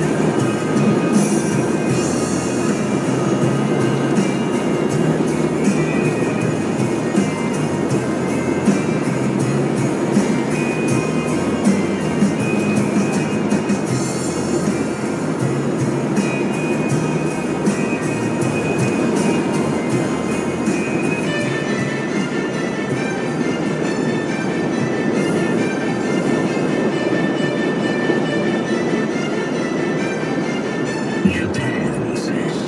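Internet-radio music playing on the car stereo inside the cabin, over the steady road noise of the car driving.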